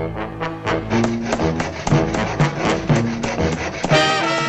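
Orchestral cartoon score with brass to the fore, trombone prominent, playing a quick run of short, punchy notes that starts abruptly.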